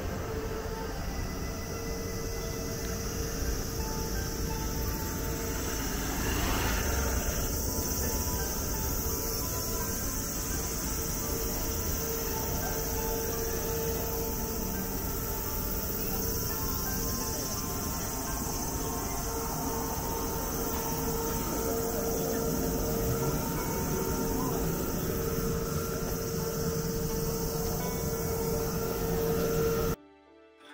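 Steady buzzing chorus of cicadas in the trees, with a constant high drone and a brief swell of noise about seven seconds in.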